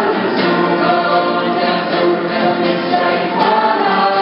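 A worship group of men's and women's voices singing a song together, accompanied by acoustic guitar and other instruments, with long held notes.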